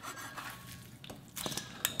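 Knife and hand scraping and moving freshly chopped raw chicken pieces on a cutting board: faint rubbing and scraping, with a few light clicks in the second half.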